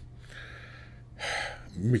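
A man's quick, audible in-breath at a close studio microphone a little past halfway, just before he starts speaking again near the end.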